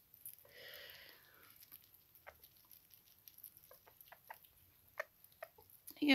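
Near silence with faint, scattered small clicks: sugar gliders chewing mealworms taken from fingers.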